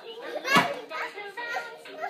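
Young children babbling and vocalising as they play, with a sharp knock and a loud high voice about half a second in.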